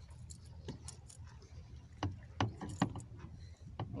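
Fishing rod, line and a small freshly caught fish being handled: a few sharp clicks and light rattles, a cluster about halfway through and another near the end, over a steady low rumble.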